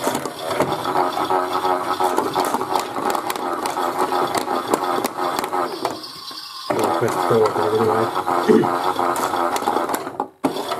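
Chad Valley Auto 2 toy washing machine on its main wash tumble: the small motor whines with a wavering pitch while the plastic drum rattles and clicks as it turns the clothes. About six seconds in the drum stops for under a second, then starts turning again.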